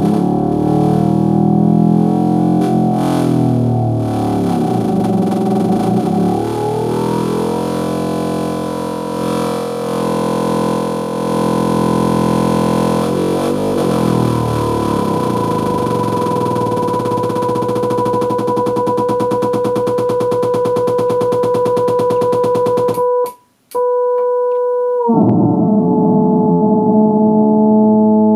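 Electronic tones from THE Analog Thing analog computer, patched to solve the Sprott SQM chaotic system, with its outputs heard as audio. A thick sound of many pitches shifts and glides as the knobs are turned, then settles about halfway into two steady tones an octave apart. It cuts out briefly near the end and returns on a new set of pitches.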